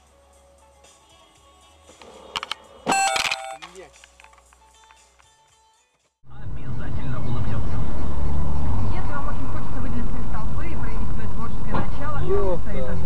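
A couple of sharp crash-like strikes with ringing about two to three seconds in, then after a brief break a loud, steady vehicle and road noise.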